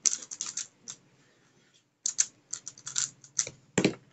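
Rapid plastic clicking of a stickerless MF3RS 3x3 speedcube's layers being turned fast, in quick bursts with a short pause about a second in. Near the end a louder thump as the cube is set down at the end of the solve.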